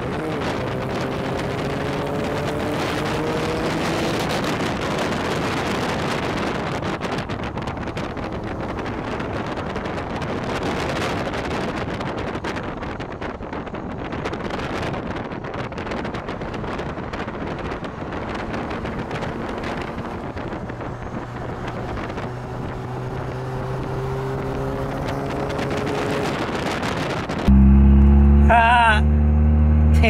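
Steady road and wind noise of cars travelling at highway speed, with engine notes rising in pitch as the cars accelerate, once near the start and again later. Near the end the sound jumps suddenly to something louder and deeper.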